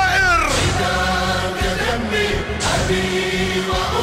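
Arabic religious elegy (nasheed) sung by male voices in choir style, with a long held note that falls in pitch about half a second in.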